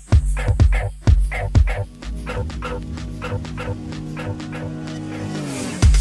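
A techno track played by DJs through a club sound system. The kick drum pounds for about two seconds, then drops out into a breakdown of sustained synth tones and repeating short stabs. The tones slide down in pitch and the full beat comes back near the end.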